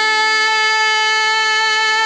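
A female bhajan singer holding one long, steady sung note over a sustained drone.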